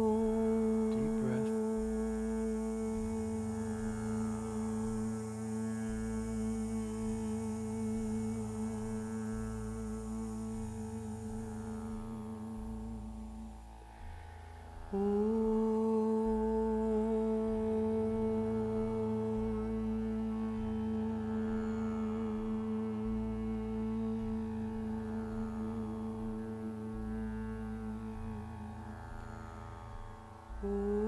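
Chanted Om held on one steady pitch through a long out-breath, twice, each lasting about thirteen seconds with a short breath between, over a low drone.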